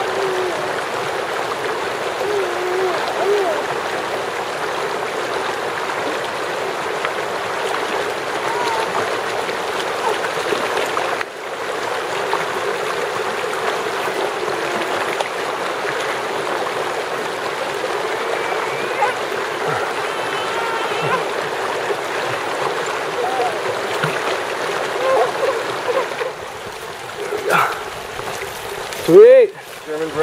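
Steady rush of a mountain river flowing over rocks and riffles.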